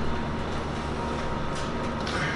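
Steady hum and hiss of running electronic bench equipment and its cooling fans, with a faint steady tone over it and a brief soft hiss near the end.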